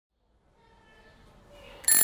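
A bicycle bell ring sound effect starting suddenly near the end, a bright ringing with several high tones, after a faint background hush fades in out of silence.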